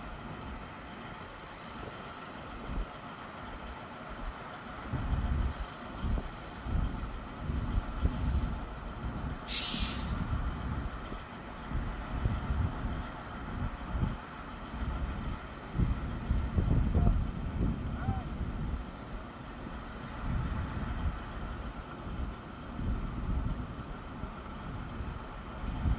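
The M270 MLRS launcher vehicle's diesel engine running steadily, with wind buffeting the microphone in low gusts from about five seconds in. A short, sharp hiss of air comes near the middle.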